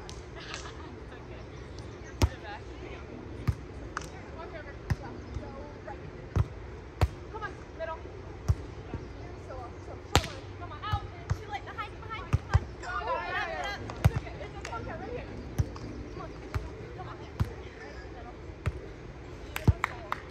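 A volleyball being struck by hands in a beach volleyball rally: sharp smacks of palm on ball that come every second or so, the loudest about halfway through when a player hits the ball at the top of a jump.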